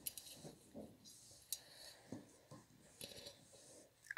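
Near silence with faint handling sounds of crochet: a metal crochet hook clicking lightly and yarn rustling as loops are pulled through, with a few soft clicks scattered through.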